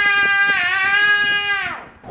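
A young girl's voice holding one long, drawn-out "tchau" (goodbye) at a high, steady pitch, dying away just before the end.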